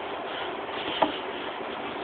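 Steady hum and hiss of background noise in a small kitchen, with one light click about a second in.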